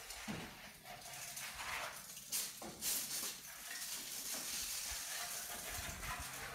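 Hand hoe and hands scraping and scooping wet gravel and broken rock into baskets, with a few sharp knocks of stone on stone.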